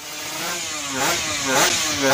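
Motorcycle engine revving in sharp blips: the pitch jumps up and falls back twice, about a second in and again near the end.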